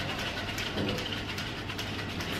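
Cocktail shaker shaken hard without ice (a dry shake), the liquid and egg white sloshing inside with a rhythmic swishing and no ice rattle. The dry shake foams the egg white for an amaretto sour.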